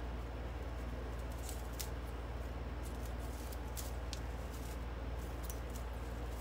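Scissors snipping through raffia loops: several separate sharp snips, irregularly spaced, over a steady low hum.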